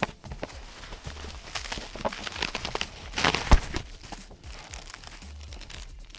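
Crinkling and rustling of silver metallic packaging bags being pulled out of a cardboard box, with the box's flaps being handled. A sharp knock about three and a half seconds in stands out as the loudest event.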